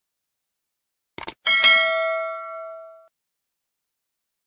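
Subscribe-button sound effect: a quick double click, then a bright bell ding that rings out and fades over about a second and a half.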